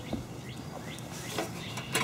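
Low, steady outdoor background with a few faint clicks, a little after the start, about halfway and near the end; the toy xylophone's bars are not struck.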